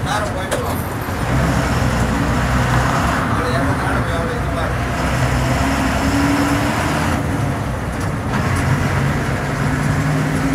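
A TNSTC bus's diesel engine running with road noise, heard from inside the cabin on the move. About halfway through, the engine note rises slightly.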